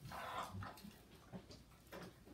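A large dog moving about on a tile floor, faint: a short hiss of sniffing or breath near the start, then a few soft ticks and knocks.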